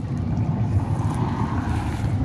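Low, steady rumble of wind buffeting the microphone.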